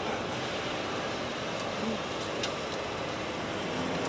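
Steady road and engine noise heard from inside the cabin of a moving vehicle.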